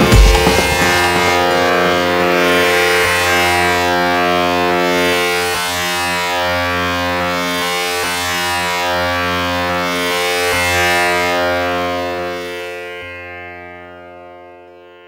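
Remixed electronic music winding down: a heavy pulsing beat stops within the first second, leaving a sustained droning chord that slowly fades out near the end.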